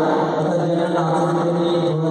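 Devotional chanting by voices in unison over one steady, unbroken held tone.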